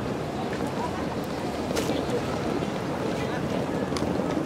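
Steady outdoor background noise: wind on the microphone and a babble of indistinct voices, with a short sharp crack about two seconds in.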